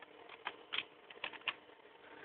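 Computer keyboard being typed on: about half a dozen light, irregularly spaced keystroke clicks.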